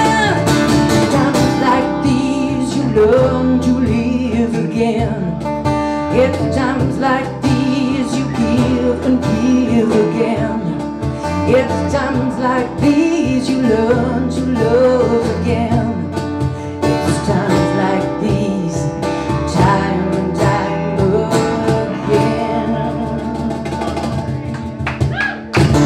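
A small live band playing a song: a woman singing over acoustic guitar, electric bass and cajon, with the cajon's hits keeping a steady beat.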